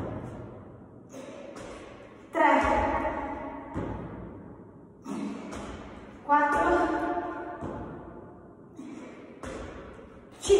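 A woman doing burpees: a loud, voiced exhalation of effort twice, about four seconds apart, each coming with a thud as she lands or drops to the floor, plus lighter thuds between, all echoing in a large hall.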